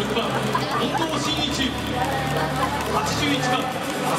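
Crowd of spectators in a domed stadium: many voices chattering and calling out together over a low, steady music bed.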